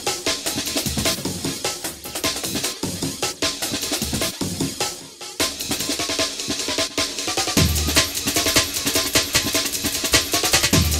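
Drum-heavy electronic backing music with a fast, steady beat. It drops out briefly about five seconds in, then deep bass hits come in near the end.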